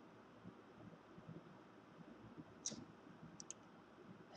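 Near silence: faint room tone with a few faint clicks of a computer mouse near the end, one single click and then a quick pair.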